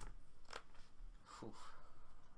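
Playing cards and a plastic deck box being handled on a table: three short, soft clicks and scrapes over low room noise.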